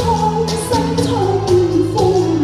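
A woman singing a slow song through a microphone over recorded musical accompaniment. Her voice holds long notes and glides from one to the next over a steady beat and bass line.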